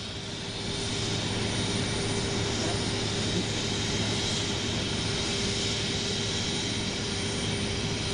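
Steady jet airliner engine noise on an airport apron: an even rushing whine with a low hum underneath, unchanging throughout.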